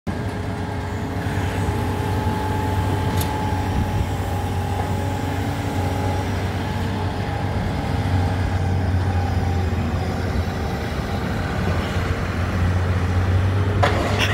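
Diesel engine of a tracked scrap-handling excavator running steadily close by, a low drone with faint steady whining tones above it. One sharp click about three seconds in.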